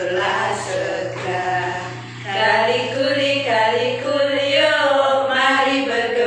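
Several voices singing a children's action song together, over a steady low hum that fades out near the end.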